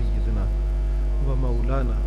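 Loud, steady 50 Hz mains hum in the microphone's sound system. Over it, from a little past halfway, a man's voice draws out a slow chanted syllable.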